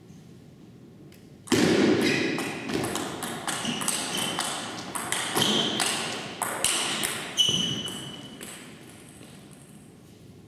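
Table tennis rally: the plastic ball clicking in quick succession off the rubber-faced bats and the table top, starting about a second and a half in and stopping about eight seconds in when the point ends.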